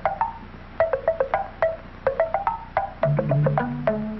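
A coffee percolator perking, rendered as short, pitched, wood-block-like plops in a loose rhythm. About three seconds in, a low held bass line of music joins the plops.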